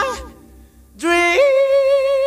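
Doo-wop vocal group singing: a held harmony chord cuts off, there is a short pause, then a high voice slides up into a long note with vibrato.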